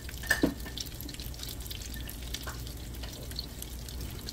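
Peeled sweet potato stems frying in a wok: a soft, steady sizzle over a low hum, with a few light clicks, the sharpest about a third of a second in.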